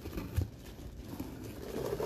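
A packed box being opened and handled: a few light knocks, one sharper about half a second in, over faint rustling of the packing, which includes styrofoam packing peanuts.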